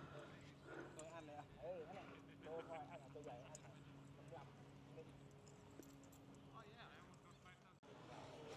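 Near silence: faint distant voices over a faint, steady low hum.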